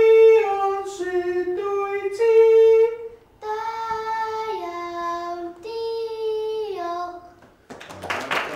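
A child singing a short melody in clear held notes that step up and down in pitch, with a brief break about three and a half seconds in.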